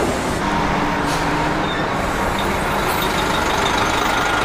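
Diesel engine of a large transport bus running steadily as the bus drives along, with road noise.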